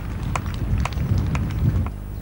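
Low rumbling background noise, strongest in the second half, with faint sharp ticks about twice a second.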